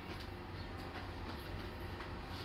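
Steady low background rumble with a faint hiss, no clear events.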